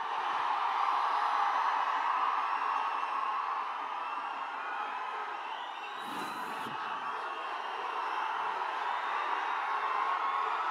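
Large auditorium crowd cheering and whooping without a break, a dense mass of shouting voices that dips slightly midway and swells again near the end.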